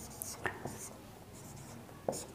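Marker pen writing on a whiteboard: a few faint, short scratchy strokes as the characters are drawn.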